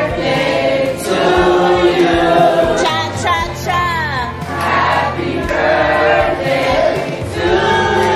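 Music with a group of voices singing together in phrases, with sliding vocal runs, over a steady low accompaniment.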